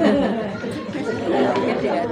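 Several people's voices talking over one another in a murmur of chatter.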